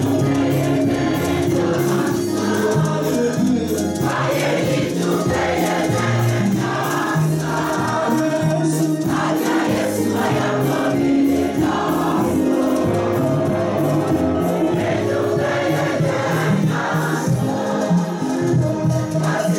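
A choir singing a gospel praise-and-worship song over instrumental backing with a steady beat.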